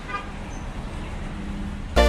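Street traffic noise, a steady low rumble of passing cars, with a faint trace of voices at the start. Loud electronic music cuts in suddenly at the very end.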